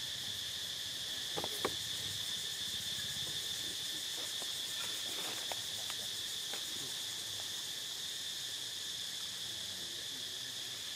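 Steady, high-pitched chorus of insects droning without a break, with a few light clicks scattered through it, the sharpest a little under two seconds in.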